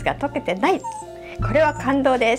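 A woman speaking in Japanese over background music.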